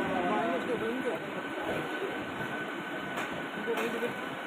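Mumbai suburban local electric train running past along a station platform: a steady rumble of wheels and carriages with a faint steady whine.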